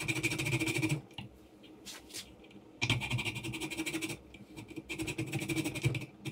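Small file being worked rapidly back and forth across the end of a brass rod held in a vise, cutting a little notch for a rubber band. A spell of fast strokes, a pause of nearly two seconds with a couple of light clicks, then a second, longer spell of filing about three seconds in.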